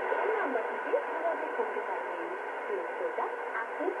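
Shortwave AM broadcast of a voice speaking Bengali, received on a Yaesu FRG-100 communications receiver tuned to 5845 kHz and played through its loudspeaker. The voice sounds thin and narrow, over a steady hiss.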